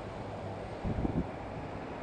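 Steady outdoor noise with a faint low hum and wind on the microphone, with a brief louder low rumble about a second in.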